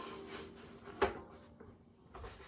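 Strings of a double-strung harp dying away faintly, and a single sharp wooden knock about a second in as the harp's frame is turned around.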